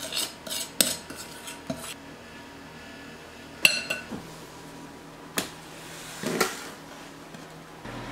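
Kitchenware clattering: a few light clicks and knocks, then a sharp metal clink with a brief ring about three and a half seconds in, another knock, and a short scrape a little later.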